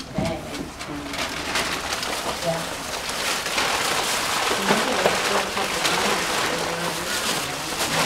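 Tissue paper rustling and crinkling as it is pulled out of a paper gift bag, growing busier partway through, with faint chatter underneath.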